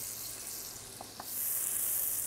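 Sliced leeks sizzling gently in butter and olive oil in a stainless steel sauté pan, softening without browning. The sizzle swells a little past the middle, with two faint ticks about a second in.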